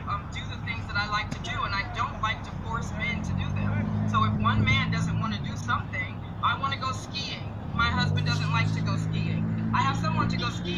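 Indistinct speech, most likely the woman in the played interview, over a steady low hum. The hum's pitch steps up about three seconds in and again about eight seconds in.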